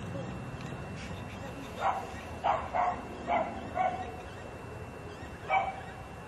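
A dog barking six short times over a steady background hum, with the barks between about two and four seconds in and one more near the end.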